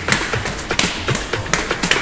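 Footsteps tapping on indoor stairs as someone climbs, a quick, irregular run of taps.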